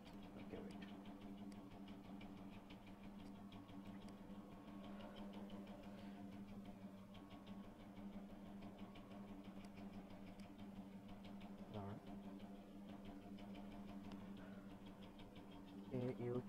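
Faint steady electrical hum with a buzz of evenly spaced overtones, and faint rapid ticking over it.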